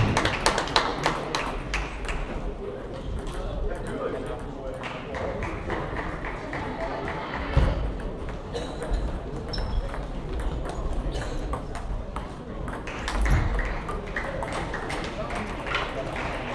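Celluloid-type table tennis ball clicking off bats and the table: a quick run of rally hits at the start, scattered bounces in the middle, and another loud run of hits about thirteen seconds in. Behind it is the steady chatter of a large sports hall, with balls from other tables in play.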